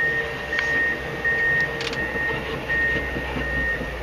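An electronic beeper sounding a high, steady beep about every 0.7 s, six times, over a low steady machine hum, with a couple of faint clicks.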